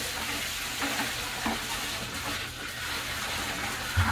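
Water poured from a bucket into a sump pit, a steady splashing pour, with a thump near the end.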